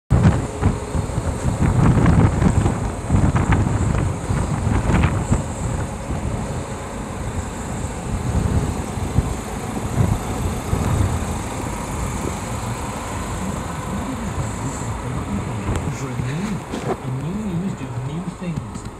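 Low, irregular rumbling noise, loudest in the first half. In the last few seconds a voice from the truck's radio comes in.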